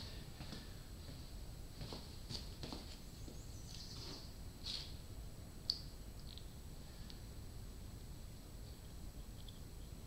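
Small metal parts and snap-ring pliers being handled while fitting a piston-pin snap ring: faint scattered squeaks and light clicks, with one sharper click a little before the middle.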